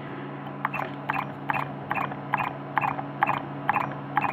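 Homemade magnet motor running: a spinning disc with neodymium magnets trips a reed switch that pulses the coil, giving short, evenly spaced clicks about twice a second over a low steady hum.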